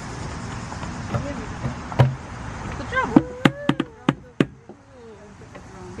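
Sharp knocks and clacks on a metal playground structure: one about two seconds in, then a quick irregular run of about five near the middle.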